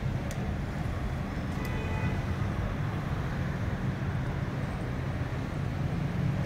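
Steady low rumble of road traffic on a city street, with a sharp click near the start and a faint, brief high tone about a second and a half in.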